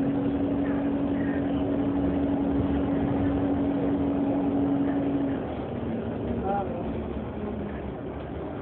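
Inside an Alexander Dennis Enviro400 Hybrid double-decker bus on the move: a steady drivetrain hum over road and cabin noise. About five seconds in, the hum drops in pitch and the overall sound gets quieter.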